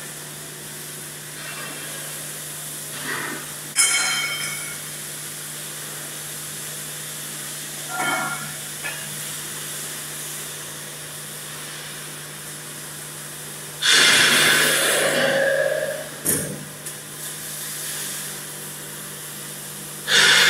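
Steady hum of factory machinery, with a sharp metallic knock that rings out about four seconds in and a smaller one a few seconds later. Near three-quarters of the way through comes a loud hiss lasting about two seconds.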